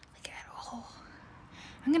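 A faint, breathy, whispery voice close to the microphone, with a couple of small clicks near the start. A woman begins speaking loudly just before the end.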